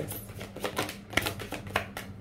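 Tarot cards being shuffled by hand: a string of irregular light clicks and snaps as the cards slide and strike against each other.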